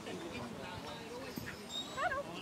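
A dog whining faintly, with short pitched cries, against background voices.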